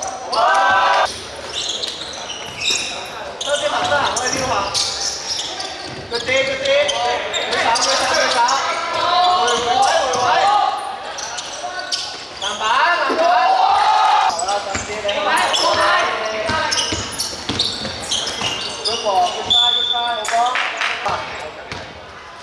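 Basketball game in a large indoor hall: the ball bouncing on the wooden court among shouting voices. Near the end there is a short high whistle blast.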